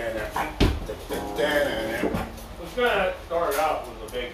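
Indistinct voice with a guitar being played, and a couple of knocks.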